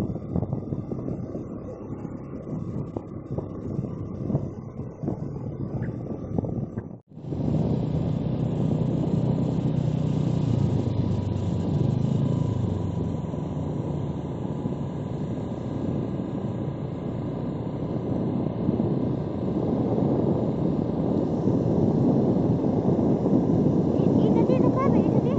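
Steady engine and road rumble of a moving road vehicle. It drops out for a moment about seven seconds in and then picks up again slightly fuller.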